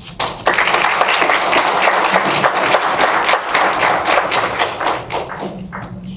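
Audience applauding: the clapping starts about half a second in, holds steady, and tapers off near the end.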